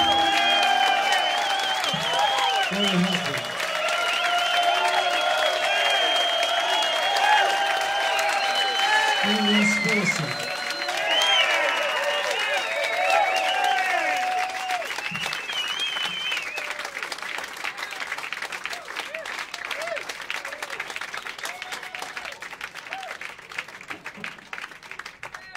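Concert audience applauding and cheering with shouts and whistles right after a song ends, then thinning out and dying down over the second half.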